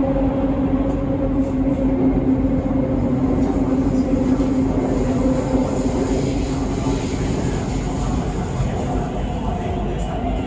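BTS Skytrain car running: a steady rumble with a constant hum of several tones, the lowest of which fades out near the end.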